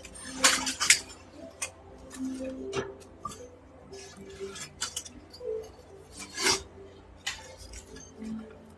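A series of sharp clinks and knocks of small hard objects, irregularly spaced. The loudest come in a quick cluster about half a second in, and another falls about six and a half seconds in.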